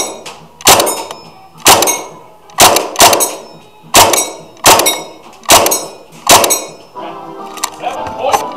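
KWA MP7 gas blowback airsoft gun firing single shots, eight of them at roughly one a second, each a sharp crack followed by a short metallic ring as the BB hits a target.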